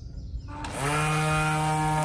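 Battery-powered string trimmer's electric motor starting about half a second in, its whine rising quickly to full speed and then running steadily. The trigger is being pressed again after a release so the auto-feed head lets out more line, because the cutting line is still a little too short, which can be heard in the sound.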